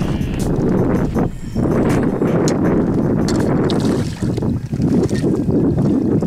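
Wind buffeting the microphone: a loud, low, rumbling noise that dips briefly a few times.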